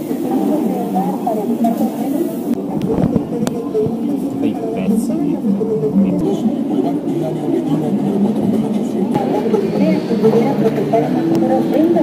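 Busy background chatter of several people's voices talking over one another, with no single voice standing out.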